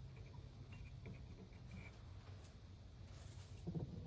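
Very quiet: a faint low hum with light scratchy rustling as a hand feels over a wooden blank held in a lathe chuck.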